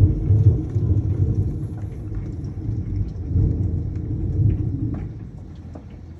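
Hailstorm: hail and rain pelting an asphalt-shingle roof, with scattered sharp ticks of hailstones over a heavy low rumble that swells and fades several times.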